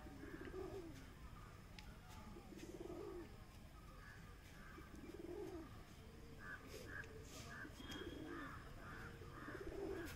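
Domestic pigeons cooing softly, a low coo every two to three seconds, with a short run of higher chirps about two-thirds of the way through.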